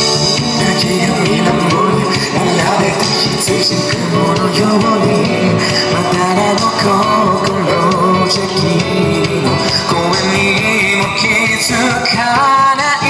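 A man singing a pop ballad through a handheld microphone over amplified backing music with keyboard.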